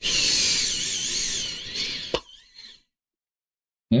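Mini electric screwdriver driving an oiled screw into a metal model part: a high, wavering whine for about two seconds that stops with a click as the screw seats.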